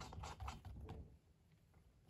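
Faint small clicks and scrapes of a new spark plug being turned in by hand into the cylinder of a STIHL BG 56 blower's two-stroke engine, stopping about a second in.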